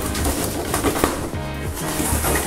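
Cardboard box flaps being pulled open and packing paper rustling, with a brief pitched sound about a second and a half in.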